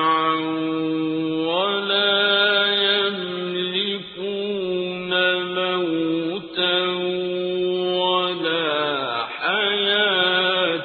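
Quranic recitation in Arabic: a single voice chanting in long held, melodic phrases that glide between notes, with brief pauses for breath between phrases.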